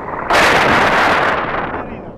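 Wind buffeting a camera microphone in paraglider flight: a loud rush of noise that starts a moment in, lasts over a second and eases off near the end.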